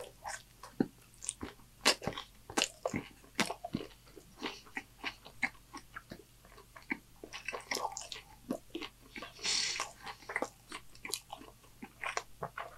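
Close-miked chewing of a mouthful of taco: irregular crunches and wet mouth clicks, with a short breathy hiss about two-thirds of the way in.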